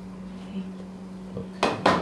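A clear plastic bowl clatters twice in quick succession near the end, knocking against a digital kitchen scale as it is lifted off.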